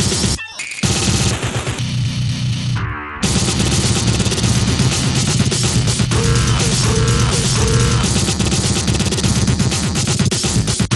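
Breakcore track at about 250 bpm: dense, rapid distorted electronic drums and noise. The sound thins out briefly about three seconds in, then the full beat comes back in.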